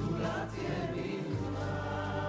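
Music: a choir singing long held notes over accompaniment.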